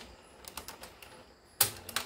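Front-panel buttons of a Sony SLV-XR9 VCR being pressed: a few light clicks, then a louder clack about one and a half seconds in.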